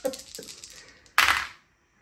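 Four small six-sided dice shaken in the hand with light clicks, then thrown into a wooden dice tray: one short, loud clatter about a second in.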